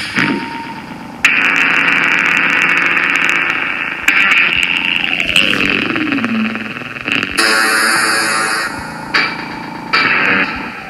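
Electronic synthesizer music from iPad synth apps (SKIID and Apolyvoks): blocks of hissing synthesized noise that cut in and out abruptly every few seconds, with one tone gliding steadily downward in the middle.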